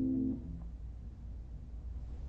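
Pratt chamber harp: a plucked chord rings and then stops abruptly about a third of a second in. After that only a faint low background hum is left.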